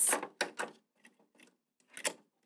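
Two light plastic clicks about half a second in as the evaporator pad assembly is pushed into the humidifier's plastic housing and its tabs snap into place, then near silence and one more short click at the end.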